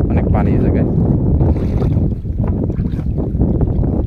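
Wind buffeting the microphone in a steady low rumble, over water sloshing and splashing as a person moves through river water.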